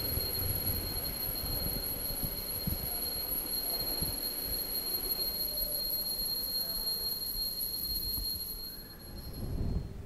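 Altar bell rung without a break through the elevation of the consecrated host, marking the consecration: a steady, high, unchanging ring that stops shortly before the host is lowered.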